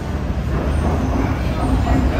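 Steady low rumble of city traffic, with faint voices of passers-by.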